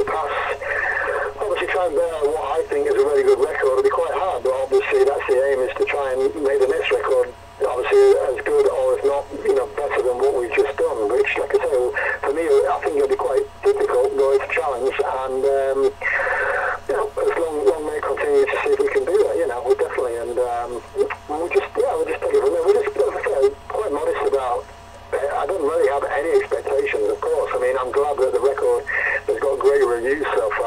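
Speech only: a person talking at length over a narrow, phone-quality line.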